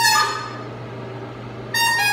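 Blues harmonica played solo: a held note rises slightly and ends just after the start, a pause of about a second and a half follows, and a new note begins near the end.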